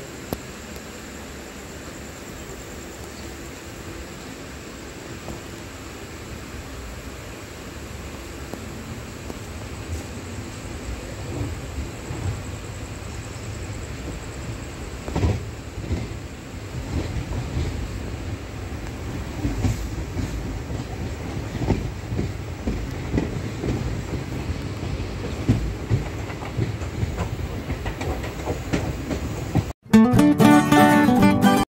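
A train running on the rails: a low rumble that grows louder over the first half, then irregular clacking knocks of wheels over rail joints.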